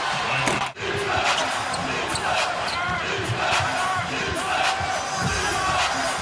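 Steady arena crowd noise at an NBA game, with a basketball bouncing on the hardwood court. The sound drops out for an instant just under a second in, at an edit.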